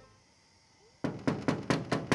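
Knuckles knocking on a sheet-metal house door: a quick series of sharp raps, about four or five a second, starting about a second in.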